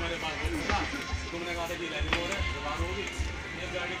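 Voices talking over music playing in the background, with low irregular thumps underneath.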